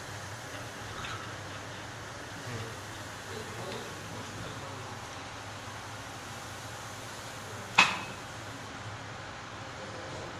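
Steady low hum and room noise, with one sharp click about three quarters of the way through.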